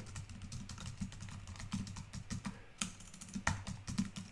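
Typing on a computer keyboard: a quick, irregular run of soft key clicks as a short phrase is typed, over a faint low hum.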